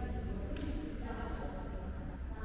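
Voices of other people talking quietly over a steady low hum, with a single click about half a second in.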